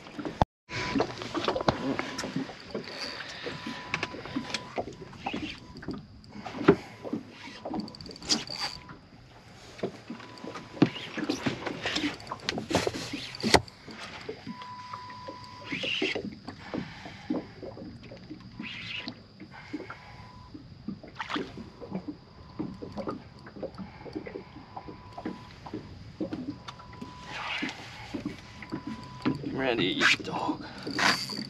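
Scattered sharp knocks and clicks of fishing gear and movement in a boat, with a faint high tone that keeps coming and going.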